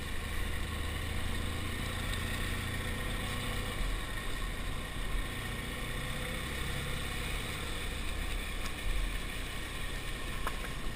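Motorcycle engine running steadily while riding at low road speed, with wind and road noise on the bike-mounted camera's microphone.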